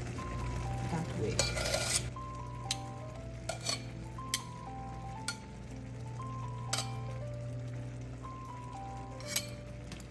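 Metal tongs clicking and clinking against a pot and the metal rim of a food flask as noodles are lifted across, with a short scraping burst about a second and a half in. Background music with a simple stepping melody plays underneath.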